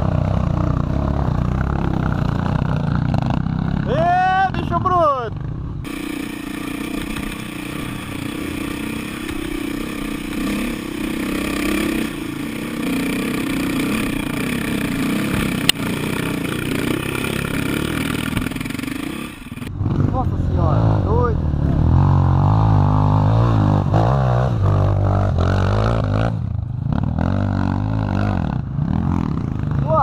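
Dirt bike engines: a motorcycle running close to the microphone with other trail bikes heard on the hill. From about six seconds in to about twenty seconds, a dirt bike's engine runs hard under load as it climbs a steep, rutted dirt slope, then the sound of the nearby running bike returns.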